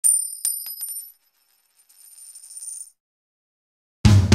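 Logo-sting sound effect: a bright, high metallic ring struck at the start, with a few quick clicks close together as it dies away within about a second. About two seconds in comes a soft, rising high shimmer that cuts off, then silence.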